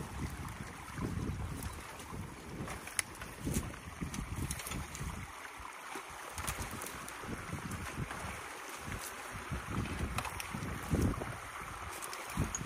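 Sticks and branches being pulled and pried out of a beaver dam with a long-handled tool: scattered sharp cracks and knocks, with splashing. Behind them water rushes steadily through the dam, and wind buffets the microphone in low gusts.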